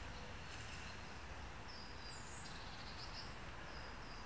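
Faint outdoor background noise with a steady low rumble, and a few short high bird chirps in the middle.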